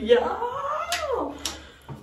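A woman's long, drawn-out whining cry of emotion, rising and then falling in pitch over about a second and a half, close to tears; two short clicks sound during it.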